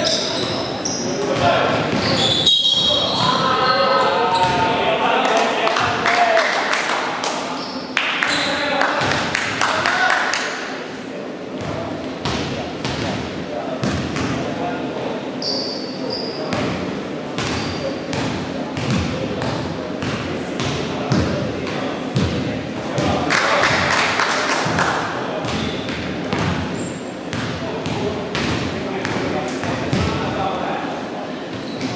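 Basketball game sounds in a large gym hall: a ball bouncing on the hardwood floor, footfalls and short high sneaker squeaks, and players' voices calling out, all echoing in the hall.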